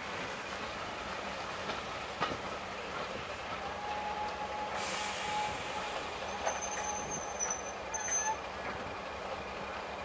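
Railway passenger coaches rolling slowly along the track. A wheel squeal sets in after about three and a half seconds and runs on for several seconds, with higher squeals joining near the end. There is a short hiss about halfway through.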